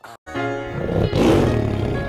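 Hip-hop gospel backing track starting up after a brief gap. It comes in with sustained chords and a loud rushing swell that peaks about a second in.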